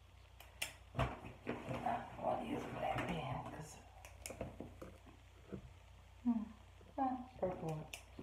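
Small hard objects being handled, with a few sharp clicks and knocks, one about a second in and another near the end. Short bits of low murmured speech come near the end.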